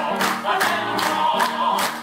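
Operatic singing with a wide vibrato over instrumental accompaniment, with sharp accents recurring about twice a second.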